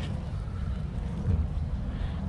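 Low, steady rumbling wind noise buffeting the camera microphone outdoors.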